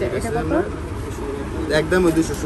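People talking in short bursts over a steady low background rumble.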